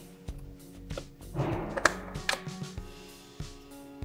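Soft background music, with a few light clicks and a brief rustle ending in a sharp click near the middle as a jump-starter cable's connector is pushed into its port on a portable power station.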